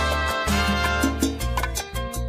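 Salsa karaoke backing track playing: a full band with a moving bass line, sustained instrument chords and steady percussion, with no lead vocal.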